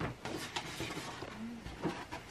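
Light rustling and small knocks of a cardboard gift box and its packing being handled, with a sharp click at the start.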